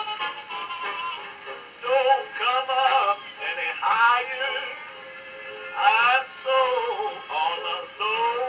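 A gramophone plays a record of a male singer with orchestra, the voice sliding through sung phrases over the accompaniment. The sound is thin and cut off at the top, over a steady surface hiss.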